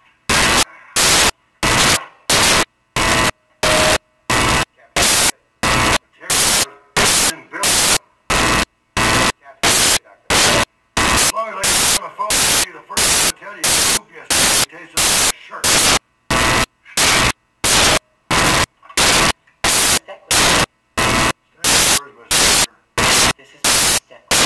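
Loud bursts of static about twice a second, chopping up a film soundtrack, with brief stretches of speech heard in the gaps.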